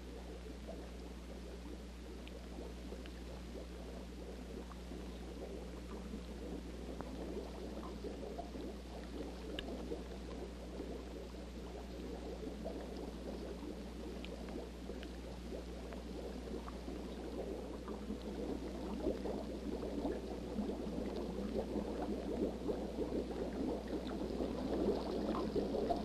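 Running, gurgling water in a cave, growing gradually louder, over a steady low hum.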